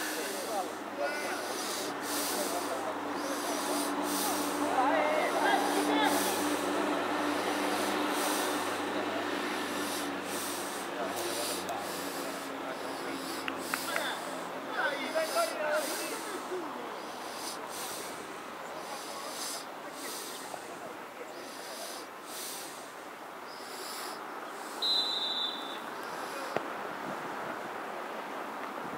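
Outdoor football match ambience: distant shouts from players on the pitch, louder around the free kick, and a short high referee's whistle blast near the end.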